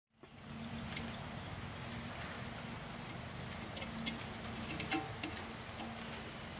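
Outdoor background with a steady low hum, a thin high bird whistle that dips slightly in pitch early on, and a few light crackles near the end.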